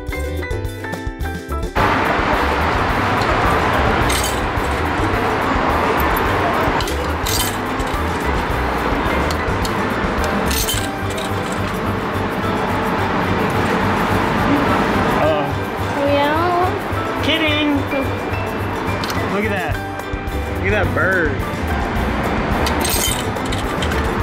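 Background music for the first two seconds, then loud busy hall noise with voices and a few metallic clinks of coins going into a drinks vending machine.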